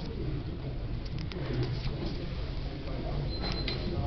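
A paper book page being turned and held by hand, with a few faint rustles and taps over a steady low hum.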